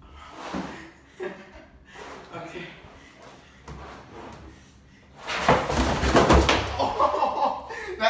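Plastic laundry basket carrying a rider as it bumps and scrapes down a flight of stairs: a rapid run of loud thumps and knocks that starts about five seconds in and lasts until it reaches the bottom.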